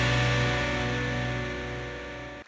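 Television quiz-show jingle ending on one long held chord of steady tones that slowly fades.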